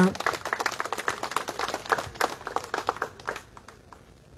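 A small crowd applauding with many hand claps, thinning out and dying away about three and a half seconds in.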